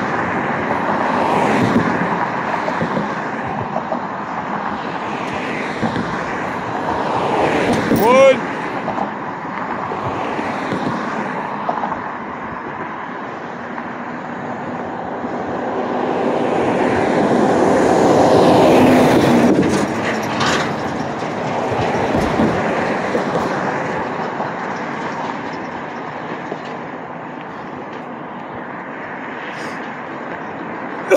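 Street traffic: cars passing one after another, swelling loudest about two-thirds of the way through. A brief squeak about a quarter of the way in.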